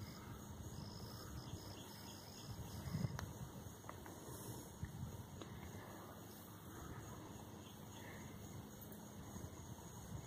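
Faint outdoor ambience: a steady high-pitched insect drone over a low rumble, with a slightly louder bump about three seconds in.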